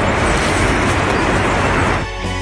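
Loud, steady rushing noise with no clear notes, cut off abruptly at the end as music with clear notes begins.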